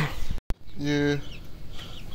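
Young chickens clucking around a person's feet, with a brief dropout of sound about half a second in.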